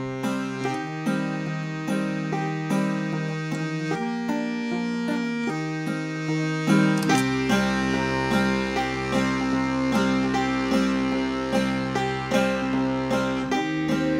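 Piano accordion and banjo playing an instrumental passage together: held accordion chords under a steady run of plucked banjo notes. Deep bass notes join about halfway through.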